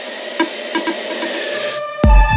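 Breakdown in an electronic dance track: a hiss of white noise with the kick and bass dropped out and only a few faint percussive ticks. The noise cuts off shortly before the end, just as the full beat comes back in.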